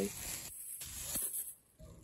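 Faint rustling of a plastic produce bag of parsley being moved and set down, fading to near silence near the end.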